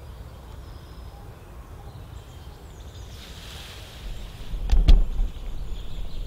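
Handling noise on the camera as it is moved: a low rumble that builds about four seconds in, with two sharp knocks just before the five-second mark.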